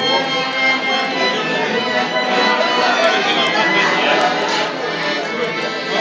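Live instrumental music played in a restaurant dining room, with many held notes, mixed with diners' talk.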